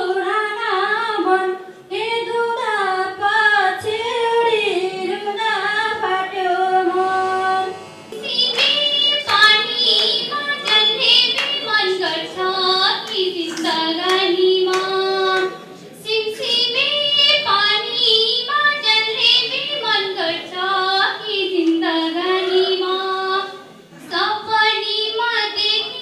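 A girl singing a Nepali folk song solo and unaccompanied, in long sung phrases with brief breaks between them.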